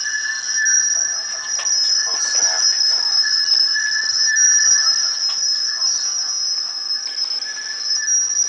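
Acoustic feedback between the iPod touch's speaker, which plays the GoPro's live audio, and the GoPro's microphone: a loud, steady, high-pitched whistle on two pitches.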